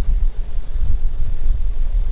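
A loud, steady low rumble with faint hiss above it.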